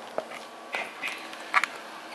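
Camera being handled and moved in closer: a few short soft knocks and rustles, the loudest near the start, in the middle and past the middle.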